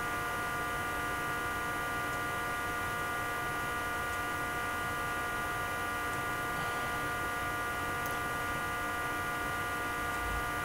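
Steady electrical hum: several unchanging high tones over a hiss, holding level without any change.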